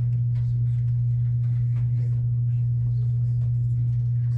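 A steady low hum at one constant pitch, the loudest thing throughout, with only faint scattered room noises above it.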